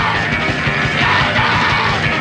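Punk band playing live: distorted electric guitar, bass and pounding drums with shouted vocals, on a muddy lo-fi live tape recording.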